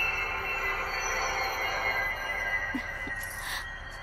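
Eerie horror-film background score of sustained high tones that slowly fade, with a short swish near the end.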